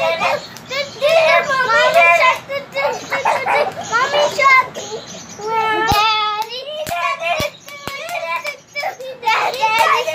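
Young children's high voices singing and shouting excitedly as they play, with one long held, gliding note just after the middle. A few sharp taps come in the second half.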